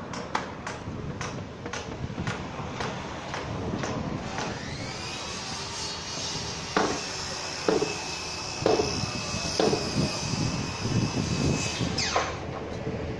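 Construction-site work sounds: sharp hammer knocks, a few at first and then about one a second in the second half. About four seconds in, a high machine whine rises and then holds steady until just before the end.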